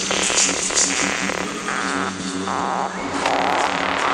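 Psytrance DJ mix in a breakdown: buzzing synthesizer textures and a steady low tone with no heavy kick drum.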